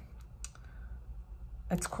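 A few faint clicks from cellophane-wrapped album packages being handled, the sharpest about half a second in; a voice starts speaking near the end.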